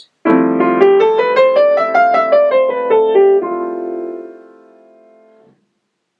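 Piano playing the F Lydian mode: an F major 7 sharp 11 chord is struck and held while a scale climbs stepwise about an octave and comes back down, a few notes a second. The chord then rings on, fading, until it is damped about five and a half seconds in.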